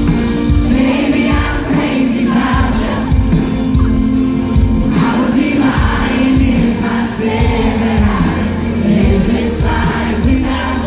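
Live band playing a slow country pop song with a male lead vocal, heard through the concert PA from within the audience.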